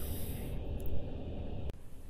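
Low rumbling background noise with a faint hiss while the camera is carried across the workbench. It breaks off with a short click about two-thirds of the way through, and a quieter room tone follows.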